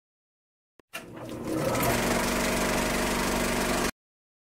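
An intro sound effect: a rapid, steady mechanical whirr that starts about a second in, swells over half a second, and cuts off suddenly just before the end.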